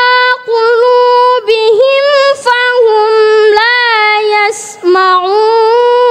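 Quran chanted in tartil style by a single high-pitched voice: long held notes with melodic turns, broken by brief pauses and a couple of hissing consonants.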